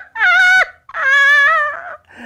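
A woman's high-pitched, wavering laugh in two long drawn-out bursts.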